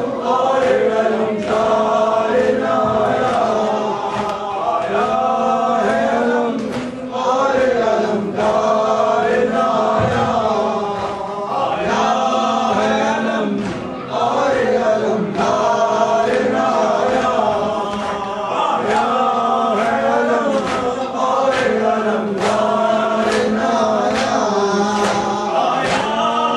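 A hall full of men chanting a mourning lament together, with chest-beating (matam) slaps keeping a steady beat under the voices.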